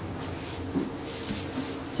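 Quiet room tone: a steady faint hiss, with a few faint low sounds.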